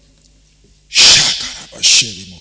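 A man's sharp, hissing exhalation close into a handheld microphone about a second in, followed by a second, shorter hiss near the end.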